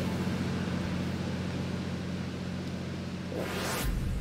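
A steady low hum with a faint hiss, then a rising whoosh near the end from a broadcast transition sound effect.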